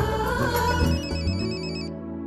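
A telephone ringing with a high, rapid electronic trill. It starts just under a second in, over sustained background music that is fading, and breaks off at the end of a ring cycle.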